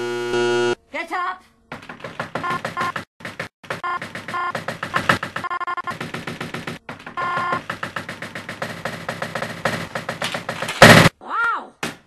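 A voice clip edited into rapid stuttering fragments, chopped and repeated many times over, with no whole words. Near the end comes a sudden loud burst, then a short tone that rises and falls.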